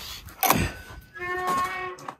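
A door thumps about half a second in, then its hinge squeaks in one steady note for most of a second as the cabin door is pushed open.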